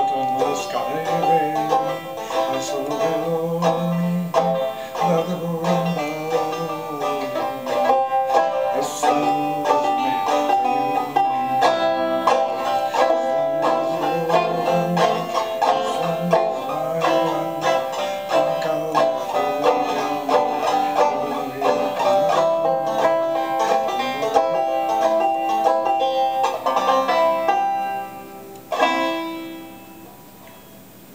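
Five-string banjo played solo, a continuous run of picked notes. It closes with a final chord about 29 seconds in that rings out and fades.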